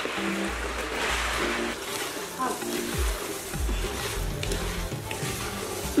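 Background music with a deep, repeating bass beat, over a steady hiss of sizzling from a pot of jollof tomato stew that has just had dry rice poured into it.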